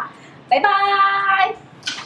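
Only speech: a woman's voice calling a drawn-out, sing-song "bye-bye" (Thai "บ๊ายบาย"), held on a steady pitch for about a second.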